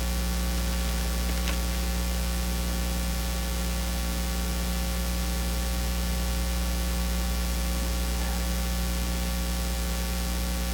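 Steady electrical mains hum with a layer of hiss, an even low buzz with no change in level.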